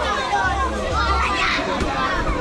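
Many children's voices, high-pitched calls and chatter of kids playing together around a bouncy castle, over a background of crowd talk.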